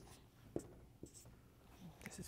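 Faint dry-erase marker strokes and taps on a whiteboard, with a couple of light ticks about half a second and a second in.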